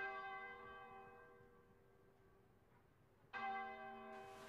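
A bell tolling twice, the strokes about three and a half seconds apart, each one ringing on and slowly fading.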